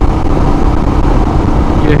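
Royal Enfield Himalayan's single-cylinder engine running steadily while riding, under heavy wind rumble on the microphone.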